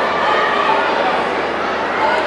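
Crowd of spectators in a sports hall: many overlapping voices talking and calling out at once, a steady hubbub.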